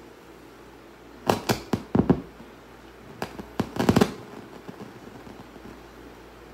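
About a dozen sharp, irregular clicks and knocks in two quick clusters, one at about a second and a half in and one near four seconds, against a quiet room just after the music has stopped.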